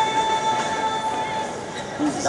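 A flute-like wind instrument holds one long, steady note that fades out about a second and a half in, over a faint haze of room noise.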